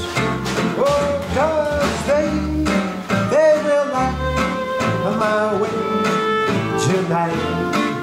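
Small acoustic band playing an instrumental passage: a violin melody with sliding notes over strummed acoustic guitars, double bass and light drums.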